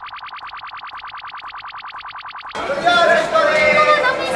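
An edited-in sound effect: a rapid, even pulsing, about a dozen pulses a second, that cuts off suddenly about two and a half seconds in, after which voices take over.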